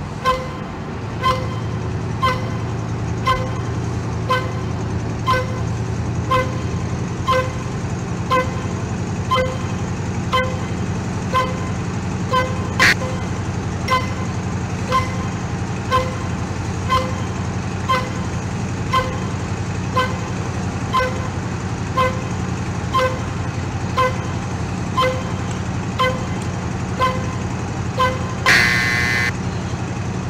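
Inside the cab of a 1991 Chevy C-1500 pickup at about 45–50 mph: a steady engine and road drone, with a pitched warning chime dinging about once a second throughout.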